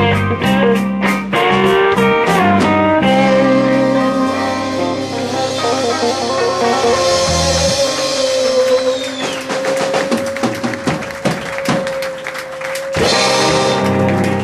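Live blues band with electric guitars, bass and drum kit playing the closing bars of a song. About three seconds in, the rhythm gives way to a long held note over ringing cymbals and scattered drum hits. A loud final chord comes in near the end.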